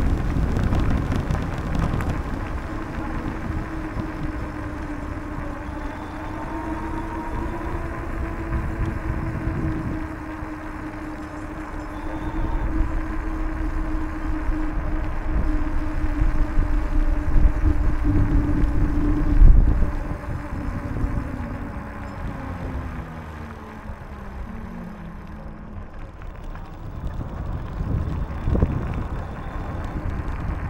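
Bicycle ride on a paved path: steady rumble of wind on the microphone and tyres on the surface. Over it runs a steady vehicle-like drone that holds for most of the ride, then falls in pitch after about two-thirds of the way. The loudest moment is a brief swell about two-thirds in.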